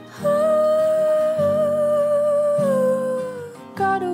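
A female pop vocal holds a long wordless "ooh" that slides down in pitch before it fades, over backing chords that change about once a second. The next sung line starts just before the end.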